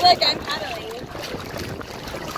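Kayak paddle strokes splashing and water sloshing against the hull, over wind on the microphone. A short vocal exclamation comes in the first half-second.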